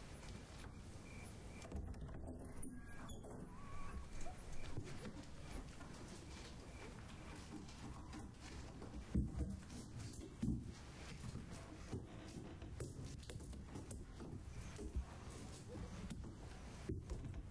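Knocking on a wooden door: two heavy thumps about nine and ten and a half seconds in, the loudest sounds here, with softer knocks and rustling of movement before and after.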